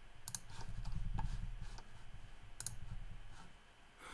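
Computer mouse clicks: a few sharp clicks, the clearest about a third of a second in and again about two and a half seconds in, over a faint low rumble.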